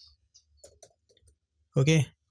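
A handful of faint computer keyboard keystrokes in quick succession during the first second or so, as a short word is typed; near the end a man says "okay".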